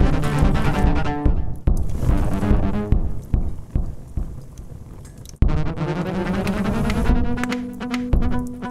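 Electric cello bowed in a contemporary piece with live electronic sound, over repeated low beats. The texture thins out about three seconds in, then comes back suddenly about halfway through with long held tones.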